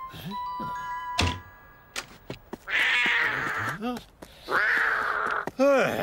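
Cartoon sound effects: a brief run of musical notes stepping upward, ending in a thud. Then a cat hisses twice, each hiss lasting about a second and followed by a short yowl.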